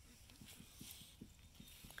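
Near silence in an outdoor pen, with only faint scattered soft ticks.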